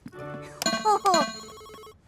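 Electronic beeps and quick falling bleeps from an interactive display console as its buttons are pressed. The tones trill like a ringing phone, with a steady lower beep after them.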